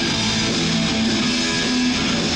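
Heavy metal band playing live, electric guitar to the fore, holding steady chords over the full band.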